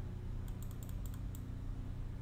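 Typing on a computer keyboard: a quick run of about seven keystrokes in under a second, over a steady low hum.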